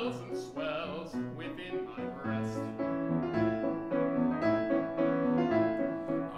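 Steinway grand piano playing a show-tune accompaniment of short, repeated chords in a steady rhythm.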